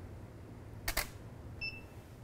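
Camera shutter firing, two sharp clicks about a tenth of a second apart, as the frame is taken with studio flash. About two-thirds of a second later comes a short high electronic beep, the studio flash head signalling that it has recycled and is ready.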